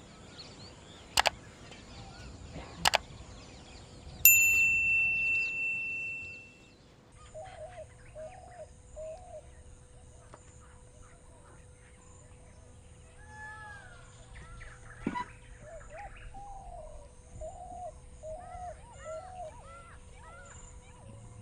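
Two sharp clicks, then a single bell-like ding about four seconds in that rings and fades over about two seconds. After it, birds chirp again and again over a faint steady hum.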